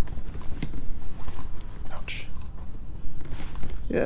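Wind buffeting the microphone as a steady low rumble, with a few faint taps from a bluegill being handled on a plastic bump board and a short breathy hiss about two seconds in.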